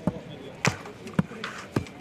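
Footballs being kicked on a training pitch: four sharp thuds of boot on ball, about half a second apart, with players' voices in the background.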